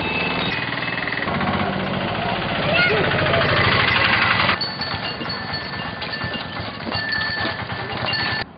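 People's voices calling out over a fast, steady mechanical rattle. The sound changes abruptly about four and a half seconds in.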